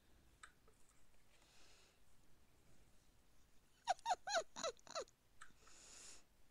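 About four seconds in, an animal gives a quick run of five or six short yelps, each falling in pitch, lasting just over a second. Before it there is only faint rustling and a tick or two.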